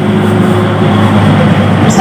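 A loud, steady rumble of a running motor vehicle.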